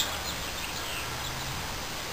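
Steady outdoor background noise with a faint low hum.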